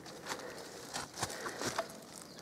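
A few faint, short rustles and clicks over quiet outdoor background, spaced roughly every half second.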